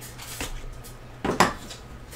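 A hard cardboard card box knocking against a metal tin as it is handled: a light tap about half a second in, then a louder clack about a second and a half in.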